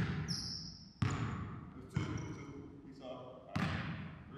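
A basketball bouncing on an indoor gym court, four echoing bounces roughly a second apart, with a short high squeak just after the first.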